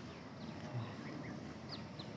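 Quiet outdoor ambience with faint distant bird calls, including a short high chirp near the end.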